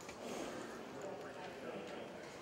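Faint, indistinct voices in a large arena, with a few light knocks scattered through.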